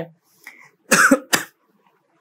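A man coughing twice in quick succession, clearing his throat, about a second in.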